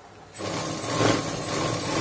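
Sewing machine running and stitching a seam in one burst, starting about half a second in and carrying on to the end.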